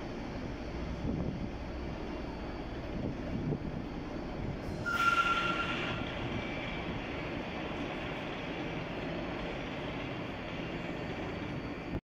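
Alstom LINT 41 diesel railcar pulling out of the station and running away into the distance, a steady low rumble. About five seconds in comes a brief, high squeal lasting about a second, the loudest sound here.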